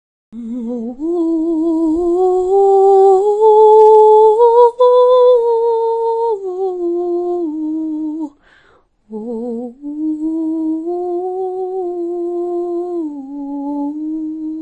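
A single voice humming a slow wordless melody in two phrases. The pitch climbs step by step, then falls, with a brief break about eight and a half seconds in before the second phrase.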